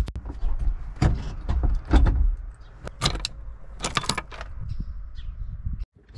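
Handling noise: irregular knocks and rubbing as a hand grips and moves the camera, with keys jingling, over a steady low rumble.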